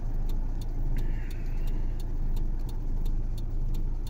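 A car's engine idling, a steady low rumble heard from inside the cabin, with a light regular ticking about three times a second.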